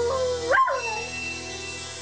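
Border Collie howling along to music: a held howl that swoops sharply up in pitch about half a second in, then falls away and fades out around a second in.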